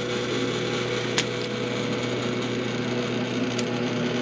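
MakerBot Replicator Z18 3D printer running, with the steady whine and hum of its stepper motors as it prints. Two small sharp clicks, about a second in and near the end, as the printed plastic chain is snapped off its raft.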